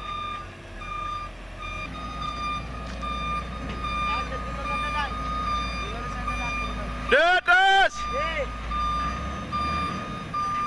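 Container truck's reversing alarm beeping over and over as the tractor-trailer backs up, over the low running of its diesel engine. A man shouts twice about seven seconds in.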